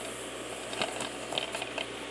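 A DVD case being handled and turned over in the hand: a few small taps and rustles against its plastic and cover, over a steady background hiss.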